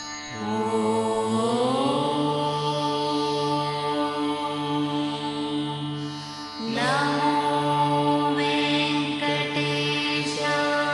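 Hindu devotional chant-like music made of long held notes, each phrase sliding up in pitch as it begins; a new phrase starts a little before seven seconds in.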